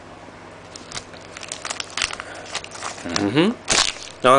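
Foil wrapper of a Panini Rookie Anthology hockey card pack crinkling as it is handled and torn open: a run of short, sharp crackles, loudest near the end.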